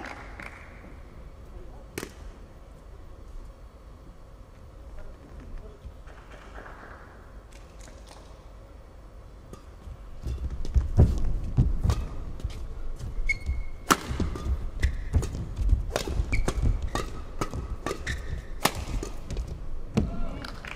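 Badminton rally from about halfway through: sharp cracks of rackets striking the shuttlecock every second or so, players' feet thudding on the court mat and a brief shoe squeak. Before that, a fairly quiet pause between points with a single tap.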